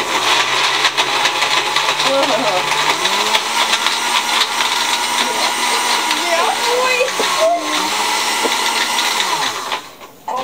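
Countertop electric blender running, churning a smoothie of juice and chopped food. Its motor hum climbs in pitch about three seconds in, wavers briefly near the seventh second, and cuts off just before the end.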